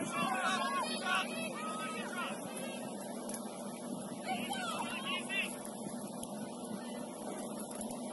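Distant shouting voices of players and spectators calling out on a soccer field, over a steady low hum.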